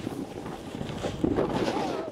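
Raw on-camera sound of a snowboard sliding and scraping over snow, with wind buffeting the microphone. A voice is briefly heard partway through.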